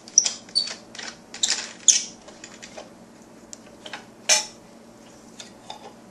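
Hard plastic parts of a Green Star twin-gear juicer clicking, knocking and squeaking as the housing is worked loose and pulled off the gears. A cluster of sharp clicks and short squeaks comes in the first two seconds, one louder knock a little past four seconds, then a few faint clicks.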